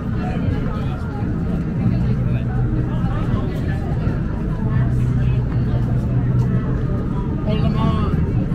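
Busy street ambience: passers-by talking nearby over the steady rumble of city traffic.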